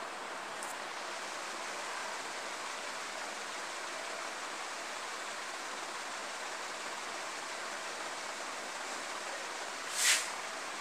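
Steady, even background hiss with no speech, ending in a brief sharp sound right at the very end.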